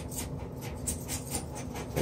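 Razor-knife blade worked along a soft Bondo seam at the edge of a tub, trimming the filler line: a quick run of light, scratchy strokes and taps, about five a second.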